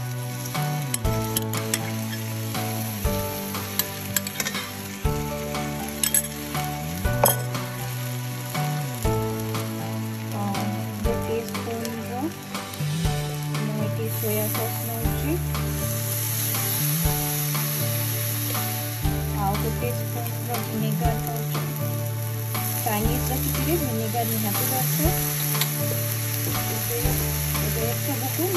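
Shredded vegetables sizzling in a frying pan as tomato sauce and soy sauce go in and are stirred with a wooden spatula; the sizzle grows brighter about halfway through. Background music with a stepping bass line plays underneath throughout.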